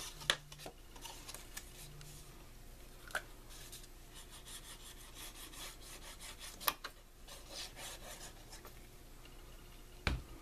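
Black cardstock pages being handled and slid over a cutting mat: faint rustling and rubbing of paper with a few light taps, the sharpest about two-thirds of the way through.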